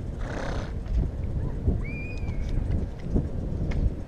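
Horse grazing right at the microphone: a breathy snort about half a second in, then a few dull low thuds as it moves.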